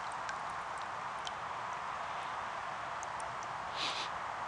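A steady, even hiss with a few faint scattered clicks and a brief swish near the end, as a dead branch is handled and moved through reeds over floodwater.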